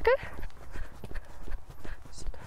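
A pony's hooves beating on wet, muddy arena sand at the trot, a steady rhythm of dull knocks.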